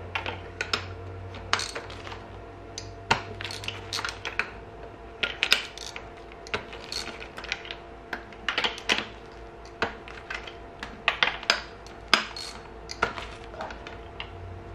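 Irregular metallic clicks and clinks, some in quick clusters, from a 16 mm deep spark plug socket on a long extension working in the plug wells of a motorcycle cylinder head as the spark plugs are loosened and drawn out.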